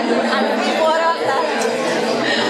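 Speech: several voices talking over one another in an audience exchange, no words clear enough to make out.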